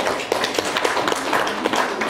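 An audience of schoolchildren applauding: many hands clapping at once, steady and fairly loud.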